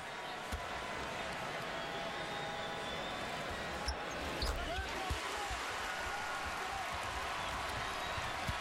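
Basketball bounced on a hardwood court at the free-throw line, a series of short thumps, under steady arena crowd noise.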